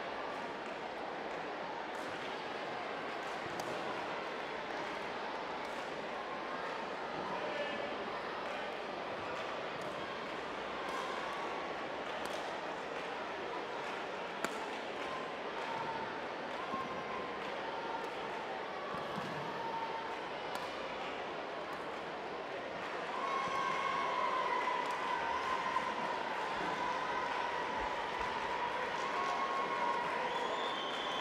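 Badminton rally: racket strings striking the feather shuttlecock in sharp clicks about once a second, with shoes squeaking on the court mat. The squeaks get louder and more frequent over the last several seconds.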